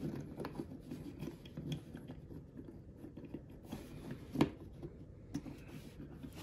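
Plastic parts of a Transformers Legacy Evolution Crashbar action figure being handled and posed: faint rubbing and scraping with small clicks of joints, and one sharp click about four and a half seconds in.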